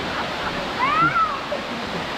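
Waterfall pouring steadily into a pool, with one short high cry that rises and falls in pitch about a second in.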